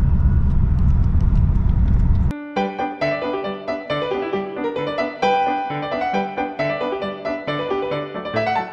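Steady low rumble of the 2001 Mercedes S320 CDI's diesel engine and road noise inside the cabin while driving, cut off abruptly after about two seconds by piano music that plays for the rest of the time.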